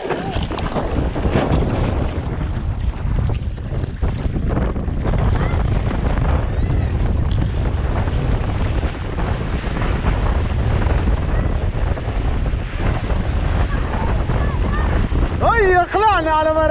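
Wind buffeting an action camera's microphone and water rushing and spraying along a windsurf board as it sails fast, a loud, steady rush. A man's voice calls out near the end.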